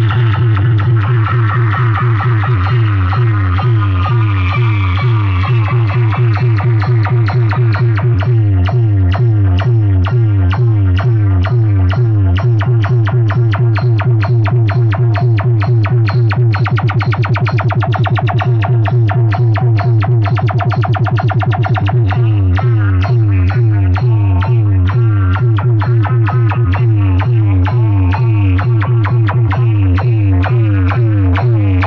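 Electronic dance music played very loud and distorted through a wall of horn loudspeakers in a DJ 'box' sound rig, with a heavy, rapidly pulsing bass beat. It cuts in suddenly.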